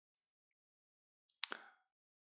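Near silence, broken by a faint tick near the start and two or three short, sharp clicks about one and a half seconds in.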